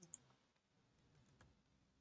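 Near silence: room tone with a few faint clicks from a computer mouse and keyboard.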